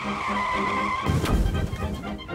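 Car tyres screeching in a steady high squeal, giving way about a second in to a louder, noisier crash-like burst.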